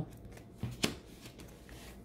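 Tarot cards being handled and swapped by hand: faint paper rustling, with one sharp click of card stock a little under a second in.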